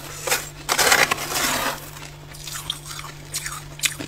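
Powdery freezer frost being scraped loose and gathered. Several scraping strokes come in the first two seconds, the longest about a second in, followed by a few faint crackles of the frost.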